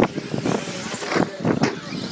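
Radio-controlled off-road trucks running on a dirt track, a rough mechanical noise broken by several short, sharp knocks.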